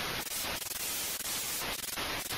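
Television static sound effect: a steady, even hiss of white noise.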